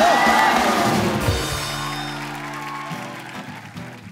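A man's sung 'oh' with wavering vibrato ends the phrase at the very start, and a studio audience breaks into cheering and applause that fades over the next few seconds. Sustained instrumental chords ring underneath from about a second and a half in and change about three seconds in.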